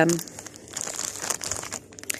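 A rustling, crackling noise made of many small ticks. It starts about half a second in and stops shortly before the end, after a word trails off.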